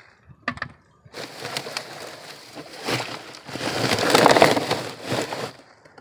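Dry, root-bound plant with its potting soil being handled and pushed into a black plastic garbage can: a crackling rustle of dry stems, roots and soil against the plastic, building to its loudest about four seconds in and stopping shortly before the end.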